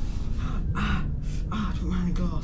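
A man gasping and breathing hard with effort as he climbs out through a window, over a constant low rumble.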